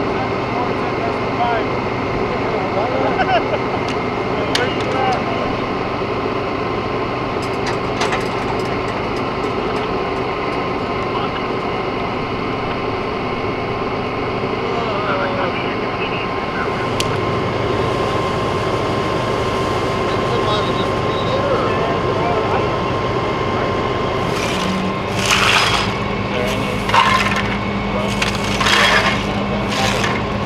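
Steady hum of idling vehicles under faint, indistinct voices, with a few sharp clicks; near the end, four short, loud scuffing noises close to the microphone.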